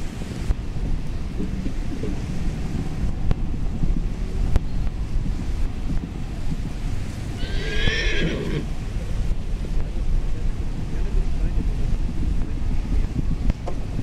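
Steady wind noise on the microphone, with a horse's high whinny lasting about a second, about eight seconds in.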